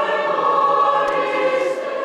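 Mixed choir of men's and women's voices singing a long held chord in a church, swelling slightly and then easing off near the end.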